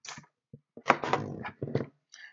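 Scissors snipping through a hook-and-loop fastener strap, then a brief vocal sound about a second long.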